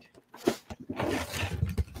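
Cardboard lid being pulled off a snug-fitting cardboard box, card scraping against card in a rasping slide that starts about half a second in and runs on.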